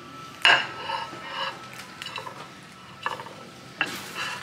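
A fork clinking and scraping against a plate of cake as someone eats. The sharpest clink comes about half a second in, followed by a few lighter taps and scrapes.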